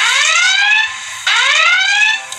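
Electronic whooping alarm sound effect in a radio broadcast: two rising sweeps, the second about a second and a quarter in. It falls about sixty seconds after 'you are on the clock', so it marks the end of the pledge drive's 60-second countdown clock.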